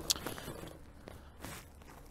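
Quiet rolling noise of a fat-tire recumbent trike on a paved path at walking pace, with a few faint clicks, the sharpest just after the start.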